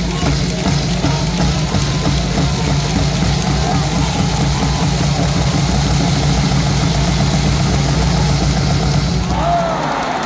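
A large ballpark crowd chanting and singing together over music from the stadium loudspeakers, with a heavy, steady bass running underneath. The whole mix eases slightly near the end.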